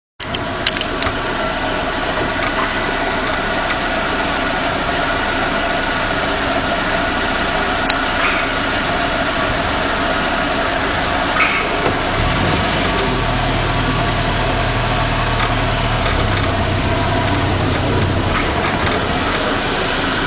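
Motor vehicle engine idling steadily, with a deeper engine hum for several seconds past the middle and a few small clicks.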